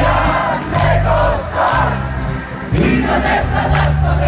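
Live band music played loudly with a crowd singing along together, over steady bass notes that change about once a second and regular drum hits.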